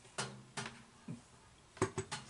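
A few light clicks and knocks of a hair flat iron being handled and set down on a hard surface, the first with a brief low ring after it.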